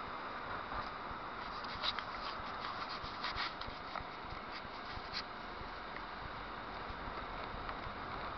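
Steady road and engine noise of a moving car, heard from inside the cabin, with a few short sharp clicks or rattles scattered about two to five seconds in.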